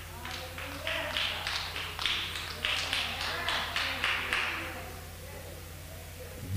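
A few people in a small congregation clapping their hands, several claps a second, dying away after about four seconds, with faint voices responding.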